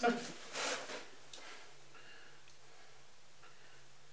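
Marker pen writing on a whiteboard: faint short squeaks and scratches after the first second, over a low steady hum.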